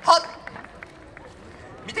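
A short, loud shout right at the start, then low outdoor crowd ambience with a few faint clicks, until a man starts speaking at the very end.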